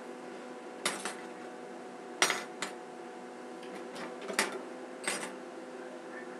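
Small metal hair pins clicking as hair is pinned up into a bun: five short, sharp clicks spread across a few seconds, the loudest about two seconds in.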